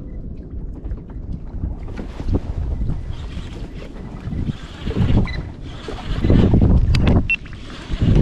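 Wind buffeting the microphone over water slapping against a kayak's hull on choppy sea, gusting loudest in the second half. A couple of sharp clicks near the end.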